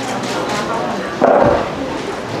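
Indistinct voices murmuring in a room, with one short louder sound a little over a second in.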